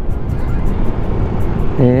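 Steady rush of wind and road noise while riding a Honda ADV 160 scooter through traffic, with background music underneath.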